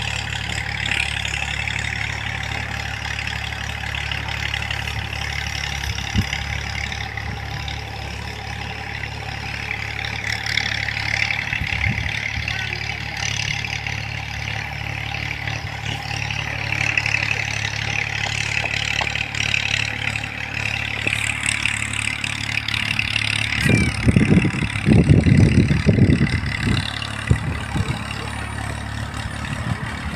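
Diesel farm tractor engine running steadily as it works a field, a continuous low drone. It grows louder, with heavier uneven low rumbling, in the last few seconds as the tractor draws near.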